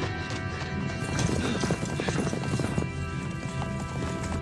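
A horse galloping, fast hoofbeats on soft ground, over sustained orchestral film score; the hoofbeats are loudest from about one to three seconds in.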